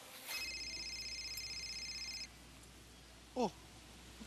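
Mobile phone ringing with a high, rapidly pulsing electronic trill for about two seconds, then cut off suddenly. A short voice sound follows near the end.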